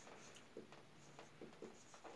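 Faint felt-tip marker strokes on a whiteboard as figures are written: a few short, quiet scrapes.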